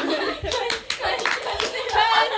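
A group of young women laughing and calling out in excited voices, with a flurry of irregular hand claps through the middle.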